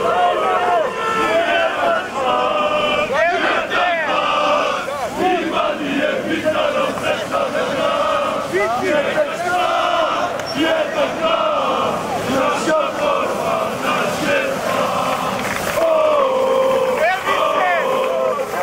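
Large crowd of marchers chanting and shouting together, many voices overlapping at a steady, loud level.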